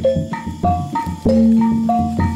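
Kuda kepang trance-dance music from a gamelan-style ensemble: struck metal notes ringing out in a quick repeating melody, about three a second, over a low drum pulse, with a deep held tone coming in about halfway through.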